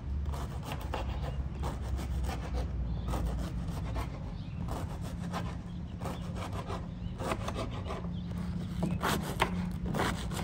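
Knife sawing through crusty bolillo bread rolls on a wooden cutting board, a run of repeated back-and-forth strokes through the crust.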